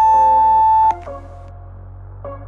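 Workout interval timer giving one long, steady electronic beep of about a second as the countdown reaches zero, signalling the end of the exercise interval. Quiet background music continues under it.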